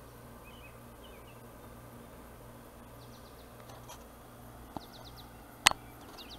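Small songbirds chirping: a few short chirps, then two quick runs of four or five high falling notes. A faint click comes just before five seconds in, and a loud sharp click near the end.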